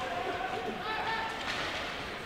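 Ice hockey rink ambience during play: faint, distant voices and crowd chatter over a steady background hum of the arena.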